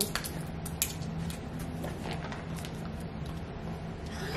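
Faint scattered clicks and light rustles of hands handling gingerbread pieces and plastic packaging on a table, over a steady low hum.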